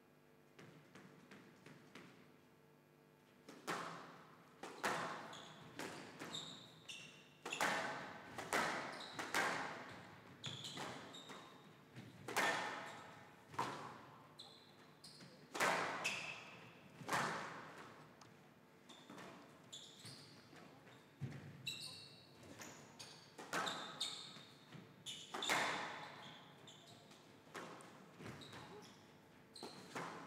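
Squash rally on a glass court: a run of sharp cracks as the rubber ball is struck by the racket and hits the walls, roughly one a second, each ringing briefly in the hall. The first shot comes about three and a half seconds in, after a quiet start.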